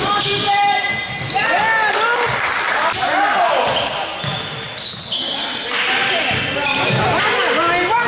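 Live basketball play on a hardwood gym floor: sneakers squeaking in short sharp chirps, the ball bouncing, and players' and bench voices calling out, all echoing in the hall.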